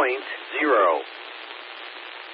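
CSX equipment defect detector's synthesized voice reading out its report over a radio, speaking a short word at the start and another about half a second in. Steady radio static hiss fills the gaps.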